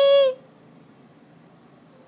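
A high-pitched baby-talk voice holding out the end of "I love you, Daddy", stopping about a third of a second in; after that only faint room noise.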